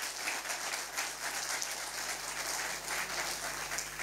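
Audience applauding: many hands clapping at once in a steady patter.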